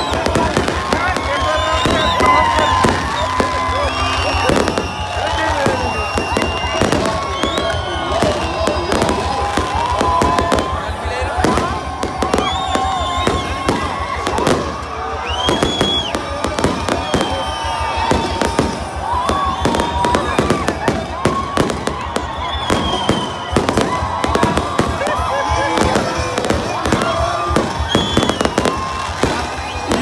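Aerial fireworks going off over and over in quick succession, sharp bangs and crackles throughout. Beneath them are crowd voices and music from a stage.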